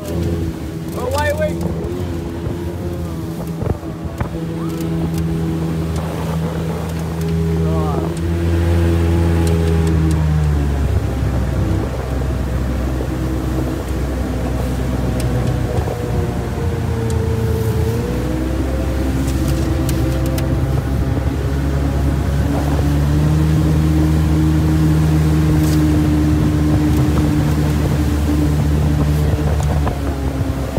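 125 hp outboard jet motor on a flat-bottom riveted aluminium boat, running under power and heard from on board. The engine note drops about ten seconds in as the throttle comes back, dips briefly near eighteen seconds, and rises again a few seconds later.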